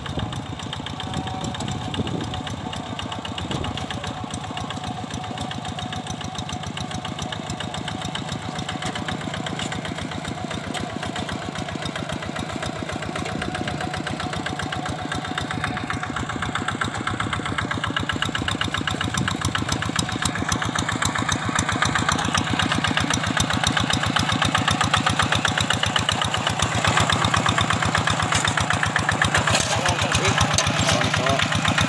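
Two-wheel hand tractor's single-cylinder diesel engine running steadily under load as it works a flooded rice paddy, with a rapid, even firing beat. It grows louder over the second half as the tractor comes closer.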